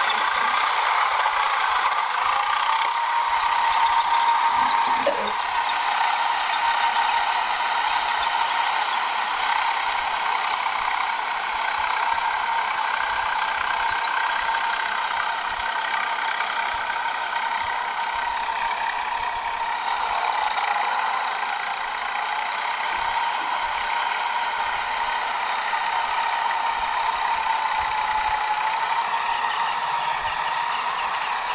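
A tractor's diesel engine running steadily under load, with a constant metallic rattle and clatter from the machinery.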